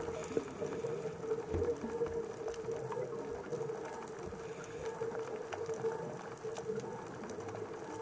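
Underwater ambience recorded through a camera housing: a steady low hum with scattered faint clicks.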